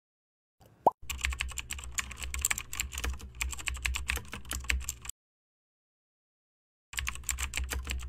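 Computer keyboard typing sound effect: rapid key clicks for about four seconds, a pause of nearly two seconds, then another run of typing near the end. A short rising pop comes just before the first run of typing.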